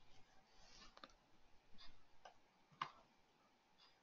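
Near silence with a few faint, scattered clicks from a computer mouse and keyboard, the loudest a little before three seconds in.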